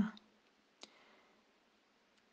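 A single faint, short click a little under a second in, in an otherwise quiet pause.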